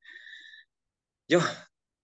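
A person's short, faint sigh, followed about a second later by a single spoken word.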